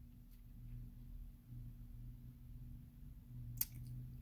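Quiet room tone: a steady low hum, with a faint click shortly after the start and a sharper click near the end.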